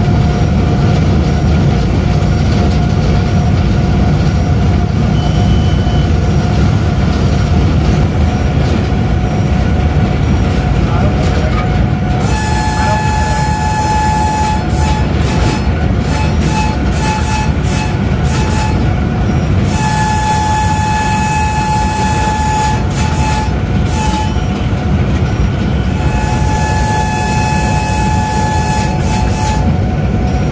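Pakistan Railways AGE-30 diesel locomotive running at about 110 km/h, heard from the cab as a steady heavy rumble of engine and wheels. Its horn sounds three times, each blast two to three seconds long, about 12, 20 and 26 seconds in.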